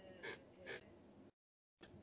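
Near silence in a pause in conversation, broken by two faint, brief noises about a quarter and three-quarters of a second in.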